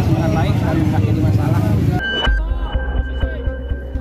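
Voices and crowd chatter, which cut off abruptly about halfway through. Then comes a low steady rumble of an idling ambulance engine, with a thin, steady high tone and a few small clicks.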